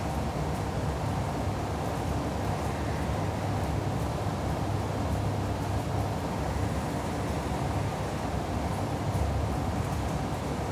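Steady low background rumble with no distinct events, like distant traffic or ventilation noise.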